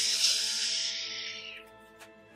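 Toilet paper being pulled off the roll in a long strip: a sudden papery rustle that fades away over about a second and a half, over soft background music.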